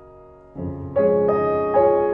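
Background piano music: a held chord fades away, then new notes and chords are struck about half a second in, about a second in and again near the end, each ringing and fading.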